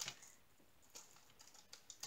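Near silence with a few faint, light clicks of small plastic diamond-painting drills and their bag being handled over a sorting tray.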